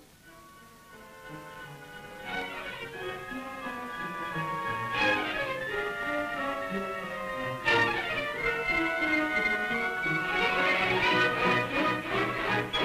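Orchestral film score led by strings, growing louder, with quick sweeping runs about two, five and eight seconds in and fast repeated notes near the end.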